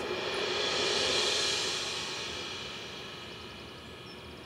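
A soft rushing whoosh that swells over about a second and then slowly fades, over faint sustained music.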